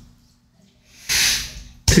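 A short breathy hiss, like a quick exhale or a voiceless 's' sound into the microphone, about a second in, with a faint steady hum underneath. A sharp click just before speech resumes at the very end.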